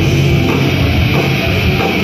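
Crossover thrash band playing live at full volume: distorted electric guitars and bass over a drum kit, heard from inside the crowd.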